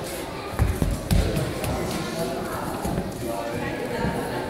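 Background chatter of several people talking in a large room, with a few dull thumps about half a second to a second in.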